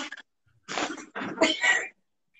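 A person breathing out hard with effort, in three short breathy bursts.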